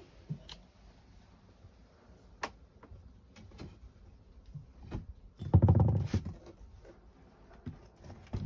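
A cat moving about among flattened cardboard boxes: scattered light knocks and clicks, then one louder rustling scrape of cardboard about five and a half seconds in.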